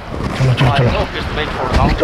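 Indistinct voices, with wind buffeting the microphone throughout.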